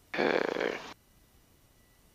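A short vocal sound, under a second long, carried over the aircraft's headset intercom.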